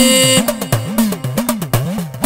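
A man's held sung note in a Malayalam revolutionary song breaks off about half a second in. After it, only the backing track plays, with a quick repeating drum beat.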